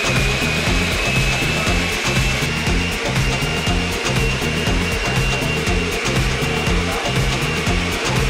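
Countertop blender running steadily with a high motor whine, over background music with a steady beat.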